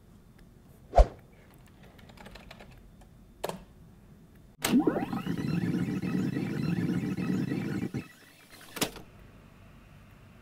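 Computer keyboard clicks as a reboot command is entered: one sharp click about a second in and a lighter one later. Then a sound rises in pitch, holds steady for about three seconds and stops, and a last click follows near the end.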